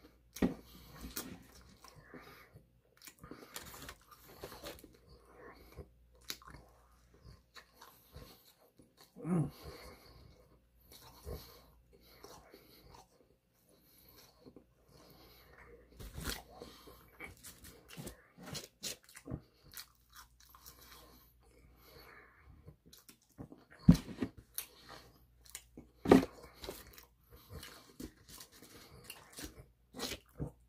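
A person chewing and biting into a fast-food burger and fries, heard as irregular close-up chewing and crunching. A few louder crackles or knocks stand out, one about ten seconds in and two in the last third.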